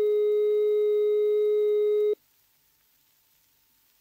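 British Post Office automatic-exchange 'number unobtainable' tone, a steady note without interruptions that cuts off suddenly about two seconds in. It signals that the dialled number cannot be obtained.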